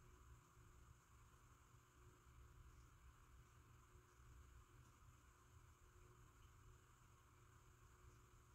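Near silence: faint steady room tone with a low hum and hiss.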